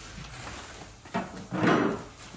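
A brief knock about a second in, then a louder half-second scrape or rustle near the end.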